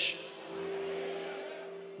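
A steady low hum holding one pitch with deeper tones beneath it. It comes in about half a second in and fades slightly toward the end.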